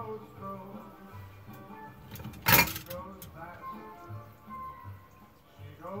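A song with a singer plays throughout. About halfway through comes one loud metallic clunk, the metal saucepan being set down on the electric stove's coil burner.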